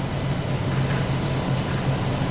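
Steady low hum with a faint hiss of background room noise: no other sound stands out.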